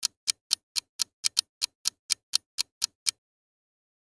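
Clock-ticking sound effect used as a thinking timer: sharp, even ticks at about four a second, stopping a little after three seconds in.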